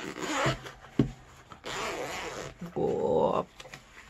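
Zipper on a fabric-covered hard carrying case being run open in rasping pulls, with a sharp click about a second in. A short low vocal sound comes about three seconds in.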